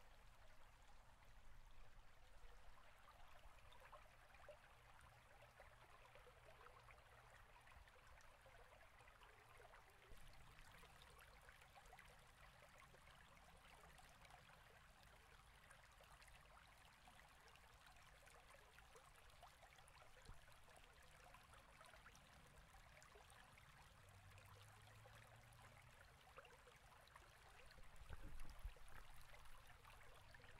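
Near silence: faint steady hiss of room tone, with a brief, slightly louder rustle near the end.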